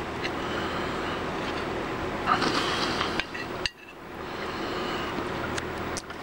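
A metal spoon scraping and clinking in a dish as food is scooped up, with a brief louder scrape a couple of seconds in, over a steady low background hum.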